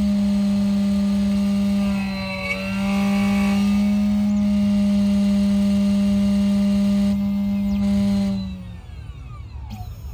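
Automatic key-cutting machine cutting a new key blade to the rekeyed lock's changed wafer code: the cutter motor runs with a steady tone, dips briefly about two seconds in, then winds down with falling pitch near the end.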